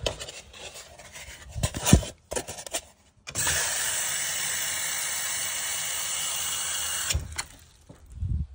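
Water running from a single-lever bathroom faucet into a porcelain sink as a steady hiss for about four seconds, turned on and off abruptly, after a few handling knocks with one sharp knock about two seconds in.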